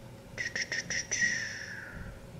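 Paper and sticker handling on a planner page: a few quick crackles, then a faint squeaky rub that slowly drops in pitch.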